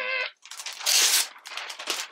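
A large sheet of drawing paper on a big pad being lifted and turned over, rustling and crinkling in several bursts, loudest about a second in. A brief bit of voice comes at the very start.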